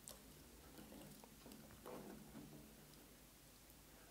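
Near silence: room tone with a steady faint low hum and a soft, faint handling noise about two seconds in.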